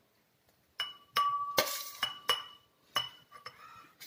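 Metal spoon clinking and scraping against a stainless steel plate and a glass bowl, about six sharp clinks starting about a second in, the loudest leaving a short ringing tone.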